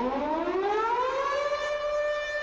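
A siren winding up: its pitch rises steadily for about a second and a half, then holds one steady note.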